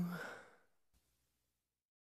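The final held note of a pop ballad ends just after the start and fades out within half a second, leaving near silence. A faint click comes about a second in.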